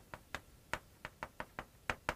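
Chalk tapping and scratching on a chalkboard while writing Korean letters: an irregular run of short, sharp taps, several a second.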